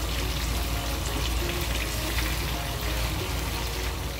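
Marinated chicken pieces shallow-frying in hot oil in a non-stick pan, a steady dense sizzle as they fry toward golden brown. Background music plays underneath.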